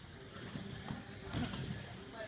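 Faint thuds and creaks of a gymnastics trampoline bed as a person makes small bounces on it, about two a second.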